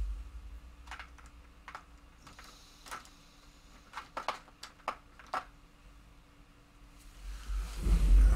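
A few light, irregular clicks and taps of small hobby items being handled at a workbench, most of them close together between about four and five and a half seconds in.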